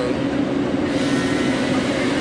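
Diesel engine of heavy logging machinery running steadily: a low, even hum over a broad rumble.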